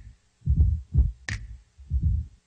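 Drum loop playing back through a mix, its snare frequencies boosted by EQ to pull the snare out for a drum trigger. Deep kick-like thumps alternate with a thin, sharp snare crack, one just over a second in.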